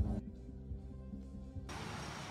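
Background music with sustained low tones. Near the end it gives way to a steady outdoor noise.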